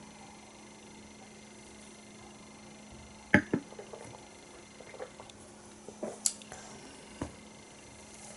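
Quiet room with a steady low hum, then a few faint clicks and light knocks from about three seconds in: small sounds of sipping beer from a stemmed glass and setting the glass down on a table.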